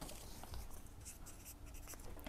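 Faint scratching and rustling of hands handling a leather bag.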